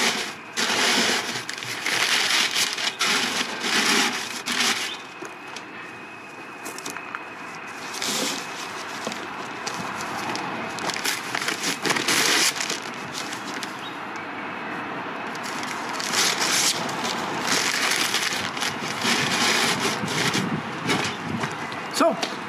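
Sheets of newspaper being crumpled and rustled in irregular bursts.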